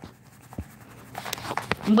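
Flour being poured from a plastic bag into a measuring cup, giving a soft scratchy rustle that builds after about half a second, with a few light clicks from the bag and cup.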